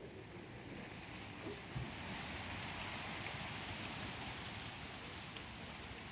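Wind rustling through bamboo and tree leaves, a steady hiss that swells about a second in and holds.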